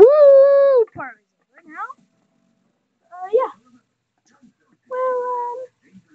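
A child's wordless vocalizing: a held "woo" at the start, then a few short gliding whimper-like squeaks, and another held tone near the end.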